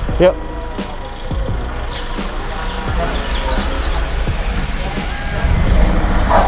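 A motor vehicle's low engine rumble with street noise, growing louder over the last few seconds.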